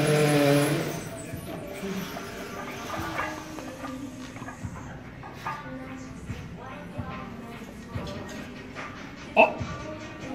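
A man's drawn-out voiced groan of effort during a barbell lift for about the first second, then quieter gym background with faint music and scattered clicks, and a short sharp sound near the end.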